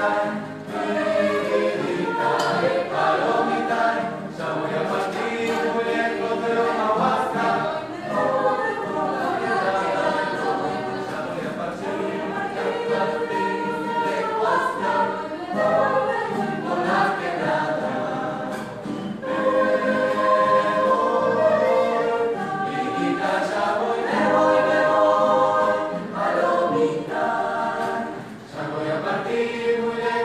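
A choir singing together, in sung phrases with short breaks between them.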